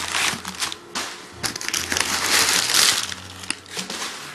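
Crumpled packing paper rustling and crinkling, with cardboard boxes rubbing and scraping as they are handled inside a shipping carton. It comes as an irregular run of rustles and crackles, loudest from about a second and a half in to nearly three seconds.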